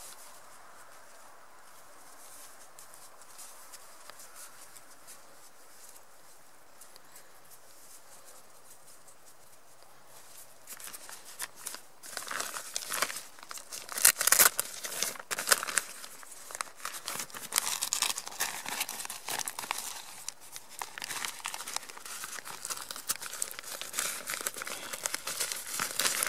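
Crinkling and rustling of stiff ripstop fabric being handled by hands, in irregular crackly bursts that start about ten seconds in after a quiet stretch and run on, loudest in a few clusters.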